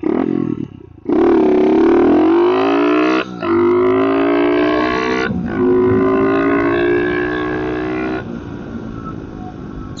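SSR 110cc four-stroke pit bike engine accelerating hard through the gears, heard through a helmet mic: the pitch climbs from about a second in, breaks and climbs again at two upshifts about three and five and a half seconds in, holds steady, then drops to a lower drone as the throttle closes about eight seconds in.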